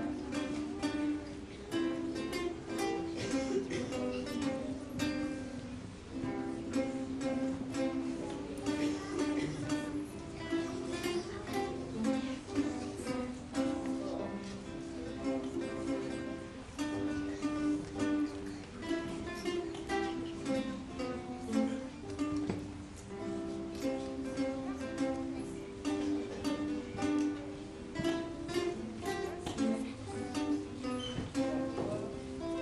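A small live ensemble of three acoustic guitars and an accordion playing a tune: held accordion notes over plucked guitar notes and chords.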